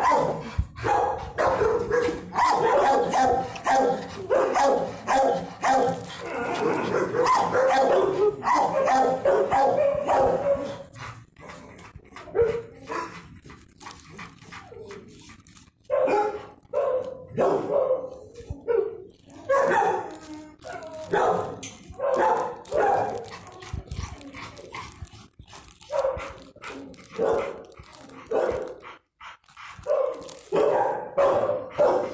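Dogs barking in a shelter kennel ward. The barks come thick and close together for roughly the first eleven seconds, then turn scattered with short quiet gaps between them.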